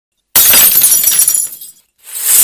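Glass-shattering sound effect: a sudden crash about a third of a second in, followed by clattering, tinkling shards that fade out over about a second and a half.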